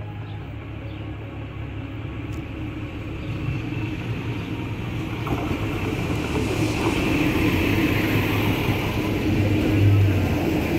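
Red DB regional diesel multiple unit pulling into the station: a steady engine drone with wheel and rail noise, growing steadily louder as the train approaches and passes close by.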